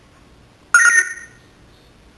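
African grey parrot giving one short, high-pitched call with several tones at once, starting suddenly about three-quarters of a second in and fading within half a second.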